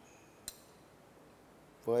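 A single light clink of a metal spoon against a ceramic dish about half a second in, otherwise quiet room tone.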